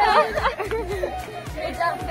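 Background music with a steady beat, with voices chattering over it.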